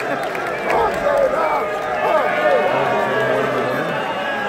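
Arena crowd noise: many voices shouting and calling out at once, overlapping, with no single speaker standing out.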